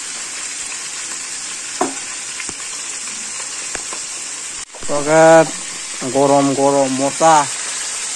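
Fish pieces and sliced onions frying in oil in an aluminium wok on a gas stove, a steady sizzle. After a brief cut about halfway, a person's voice sounds over the sizzle.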